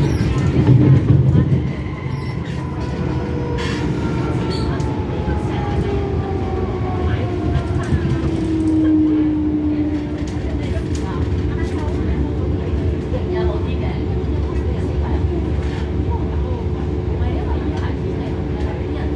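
Hong Kong MTR M-Train electric multiple unit running, heard from on board: a steady rumble of wheels and running gear, with the electric traction motors' whine gliding down in pitch over the first several seconds.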